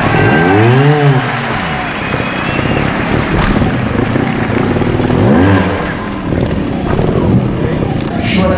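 Sherco trials motorcycle engine blipped sharply twice as the bike hops up the obstacles, each rev rising and falling in pitch: a longer one near the start and a shorter one about five seconds in.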